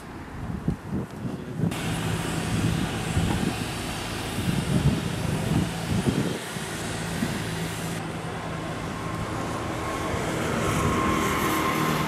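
A few sharp knocks, then from about two seconds in a work truck's engine running steadily with a low hum and a hiss over it. A faint thin whine joins near the end.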